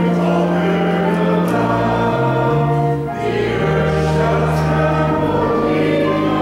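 A hymn sung by a church congregation, with long held bass notes underneath that change every second or two.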